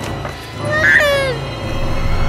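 A single meow, about a second long, that rises and then falls in pitch, over steady film-score music.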